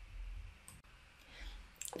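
A pause in speech: faint low room hum, with a single faint click just under a second in.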